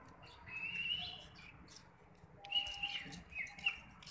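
Birds chirping: two bouts of short, gliding high calls, one starting about half a second in and another from about two and a half seconds in, with scattered faint clicks in the background.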